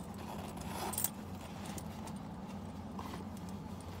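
A leather handbag being handled and its pockets opened: soft rustling with a few light clicks and jingles from its metal hardware and chain handles, over a steady low hum.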